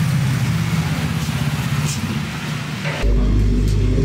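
A motor vehicle engine running steadily close by, with street noise. About three seconds in it gives way abruptly to a steady low hum.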